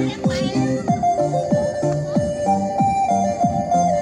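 A traditional song with a steady drumbeat of about three strikes a second, under a held melody line and stepping bass notes.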